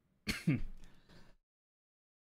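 A man coughing and clearing his throat, one harsh burst starting about a quarter second in, brought on by water going down the wrong pipe. The sound cuts off suddenly after about a second.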